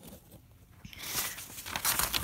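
A sheet of paper rustling and crinkling as it is handled and folded, with a few small clicks. It starts about a second in, after a brief hush.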